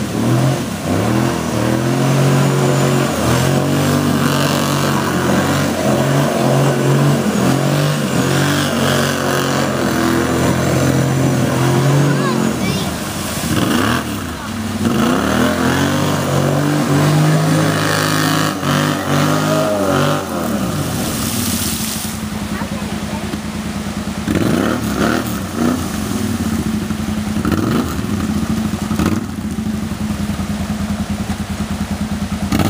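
Kawasaki Brute Force ATV engine revving up and down repeatedly as it drives through a creek, with water splashing from the tyres. About two-thirds of the way in, the engine settles into a steadier, lower running note with a few short blips of throttle.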